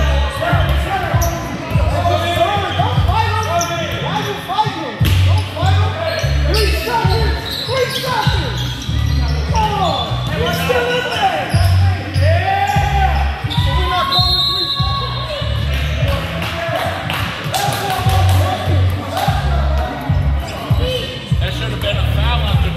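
Basketball game play on an indoor court: a basketball bouncing on the floor and short, quick squeaks from sneakers, with shouting voices throughout.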